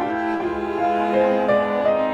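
Bowed string ensemble of violin, viola and cellos playing sustained, overlapping notes in a chamber-jazz piece, the upper lines moving every half second or so over a held low note.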